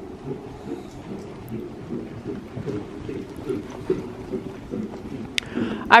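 Steady low rumbling noise with irregular soft thuds, and a single sharp click near the end.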